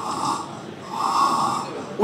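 A sleeping child snoring through an open mouth, two snoring breaths, the second longer. This is typical of paediatric obstructive sleep apnoea from enlarged tonsils and adenoids.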